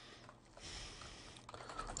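Faint typing on a computer keyboard: a few keystrokes, mostly in the second half.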